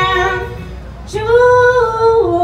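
Live band music: a lead melody of long held notes over bass. One note fades out about half a second in, and after a brief lull a new, higher note starts just past a second in.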